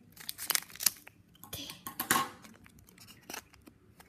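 Foil wrapper of a Pokémon TCG booster pack crinkling and tearing in short, uneven crackles as it is worked open by hand; the pack is hard to open.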